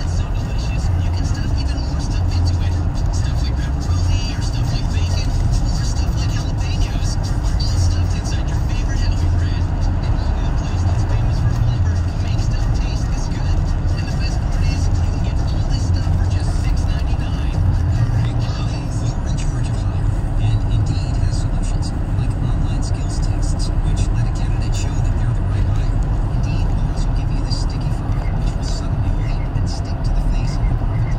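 Steady road and engine noise inside a moving car's cabin at freeway speed, mostly a low rumble.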